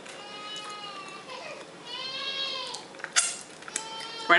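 Baby crying: two long wavering wails, the second starting about two seconds in, followed by a couple of sharp clicks near the end.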